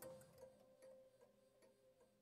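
Near silence: the faint tail of closing background music, a last held note fading out under soft, regular ticks about every half second.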